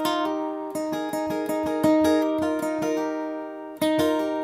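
Steel-string acoustic guitar with a capo playing a fill of plucked double-stop notes, picked with a pick and fingers together (hybrid picking). The notes come several to the second and each is left ringing.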